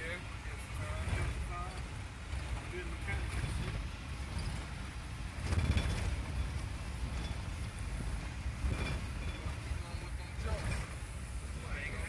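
Road and engine noise heard from inside a moving vehicle: a steady low rumble, briefly louder about halfway through.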